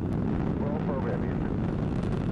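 Space Shuttle Atlantis's two solid rocket boosters and three main engines, a steady deep rumble as the shuttle climbs just after liftoff.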